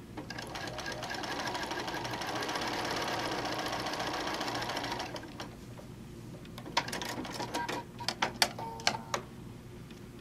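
Bernina B 590 sewing machine stitching a seam at speed. It picks up over the first second, runs evenly for about five seconds, then stops. A few seconds later comes a cluster of sharp clicks and taps.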